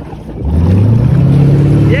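Motorboat engine throttling up hard to pull a rider up from the water on a tow rope. Its note climbs in pitch about half a second in, then holds high and loud.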